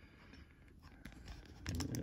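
Faint handling noise, small taps and rubs, as the camera is being repositioned, with a man's voice starting near the end.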